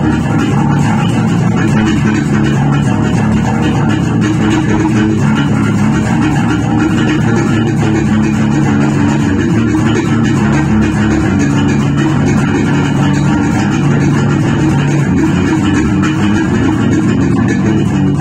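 Electric bass guitar played fingerstyle, a continuous plucked groove with no pauses.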